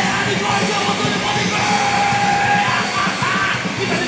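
Live punk rock band playing loudly: distorted electric guitar, bass and drums, with shouting over the music.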